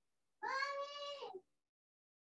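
A single drawn-out, meow-like animal call about a second long, starting about half a second in, holding a high steady pitch and falling away at the end.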